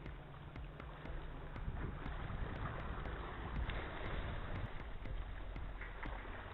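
Small waves washing against shoreline rocks, with wind rumbling on the microphone: a steady, even noise.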